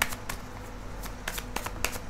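A tarot deck being shuffled overhand by hand: an irregular run of short card slaps and flicks as packets of cards drop from one hand into the other.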